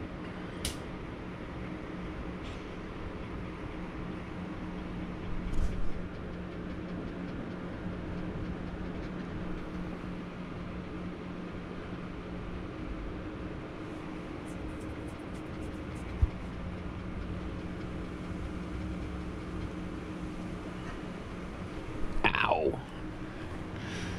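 Steady low mechanical hum with a constant tone, like household ventilation running. A brief scuffling noise about five seconds in and a single sharp knock about sixteen seconds in stand out above it.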